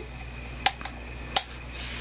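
Three sharp clicks and a faint rustle as the lid of a small white jar of rose petal toning gel face mask is opened by hand.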